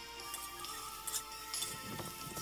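Soft background music with held notes.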